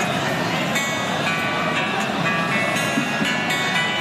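Commotion of a large crowd of men in a hall, many raised voices talking and shouting over one another in a steady din, during a scuffle at a political meeting.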